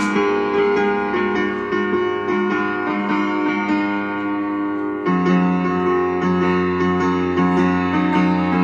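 Piano played with both hands: sustained chords under a melody line, moving to a lower, fuller chord about five seconds in.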